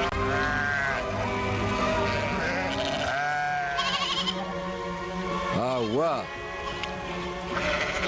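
Sheep bleating several times, with a wavering bleat about six seconds in and another near the end, over background music with long held notes.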